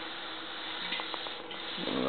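Steady background hiss with a few faint clicks about a second in, from the bronze temple bell being handled.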